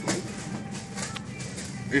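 Supermarket background noise: a steady hum with faint voices in the distance and a few small handling clicks.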